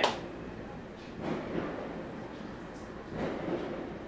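Distant fireworks popping outside, heard as faint dull thuds about a second in and again about three seconds in, over a low background rumble.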